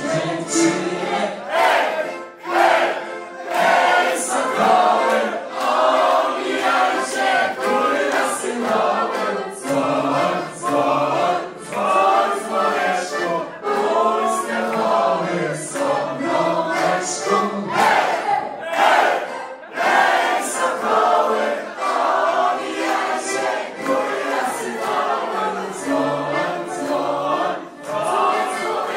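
Many voices singing a song together in chorus, a group of guests joining a singer on a microphone.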